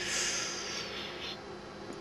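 A man's breath: a soft rush of air that swells and fades out within about a second and a half, over a faint steady hum.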